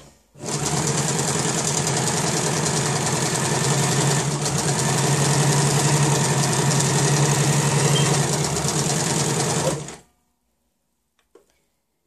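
Janome electric sewing machine running steadily at a fast stitching rate as it sews a straight seam through fabric. It stops suddenly about ten seconds in, and a couple of faint clicks follow.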